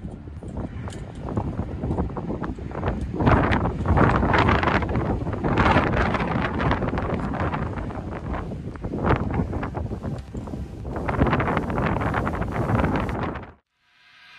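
Wind gusting against the microphone on an exposed mountain ledge, swelling and fading several times, then cutting off suddenly near the end.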